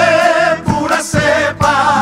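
A group of singers in chorus with rhythmically strummed acoustic guitars, performing a Bolivian chapaca cueca; the voices hold notes with a wavering vibrato between steady strokes of the accompaniment.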